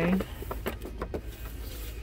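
Boxed die-cast model cars being handled and shifted on a store shelf: a series of short cardboard clicks and knocks over a steady low hum.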